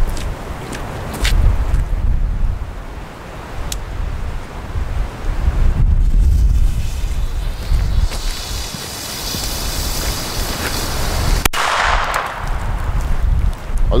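Wind buffeting the microphone in gusts, with a few faint clicks in the first four seconds and a hiss for about three seconds past the middle.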